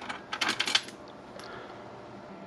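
A quick run of light clicks about half a second in, from a screwdriver working the guitar amp's chassis screws out from underneath the cabinet.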